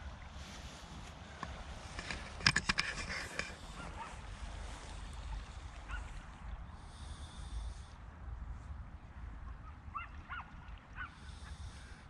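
Geese honking, a few short calls near the end. The loudest sound is a burst of crackling and rustling from steps through nettles and grass about two and a half seconds in.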